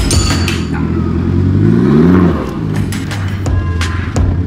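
Toyota Hilux 1KD 3-litre turbo diesel revved once in the engine bay: its pitch climbs for about a second, then drops back toward idle. Music plays at the start and comes back near the end.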